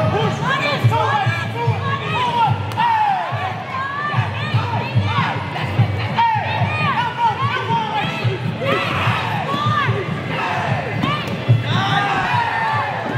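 Fight crowd shouting and cheering, many voices calling out over one another without a break.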